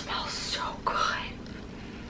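Soft, breathy breath sounds from a woman with no voiced tone, dying away after about a second.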